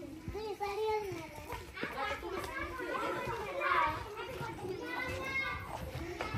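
Several children chattering and calling out at play, their voices overlapping.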